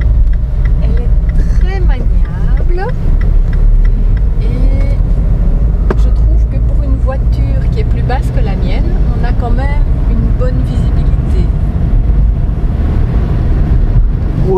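Inside a moving Mini Countryman: a loud, steady low rumble of engine and road noise fills the cabin.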